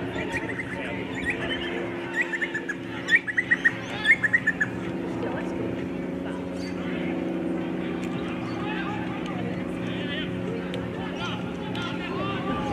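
A bird calling in a quick run of short, high chirps about two to four and a half seconds in, over a steady low hum and distant voices.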